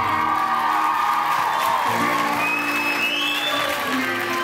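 Audience applauding and cheering as the band's last chord rings out, with a high whistle rising near the end.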